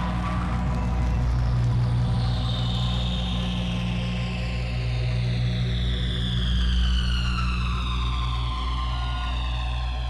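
Ambient electronic drone: a steady low hum under many high tones that slide slowly downward together.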